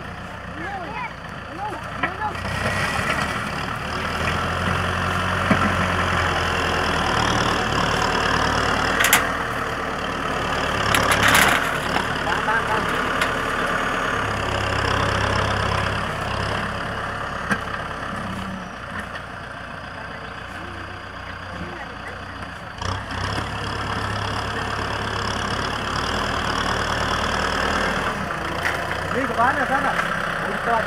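Kubota M6040 SU tractor's diesel engine running under load as it pushes soil and gravel with a front dozer blade, the engine note swelling and easing every few seconds as the load changes. A few sharp knocks stand out, the loudest about eleven seconds in.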